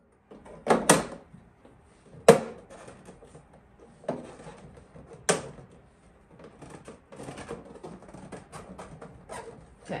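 Plastic rear cover of a Vitamix FoodCycler FC-50 countertop food recycler being pressed and clicked into place by hand: four or so sharp clicks and knocks, the loudest about a second in and about two seconds in. Lighter rustling handling follows near the end.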